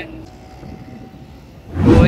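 Road traffic running steadily in the background, then a short, loud low rush near the end, like a vehicle passing close by.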